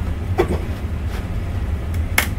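A steady low rumble with a few light clicks and taps spread across it, from a friction strap being pulled tight around a plastic mold.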